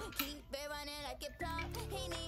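Quiet background music with a shifting melody.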